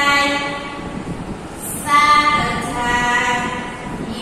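Several voices chanting together in a drawn-out sing-song, with long held notes that step up and down in pitch and swell again about two seconds in.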